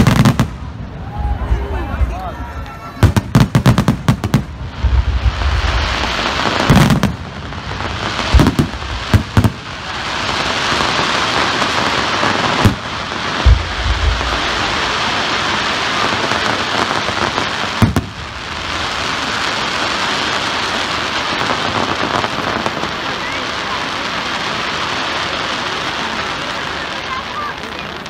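Aerial fireworks bursting. There are sharp bangs, most of them in the first half, then from about ten seconds in a dense, unbroken crackling as the shells' glittering trails fall, with one more bang a few seconds later.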